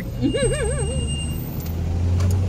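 Car engine running, heard from inside the cabin, its low rumble growing louder in the second half. Near the start comes a brief wavering, voice-like warble that lasts under a second.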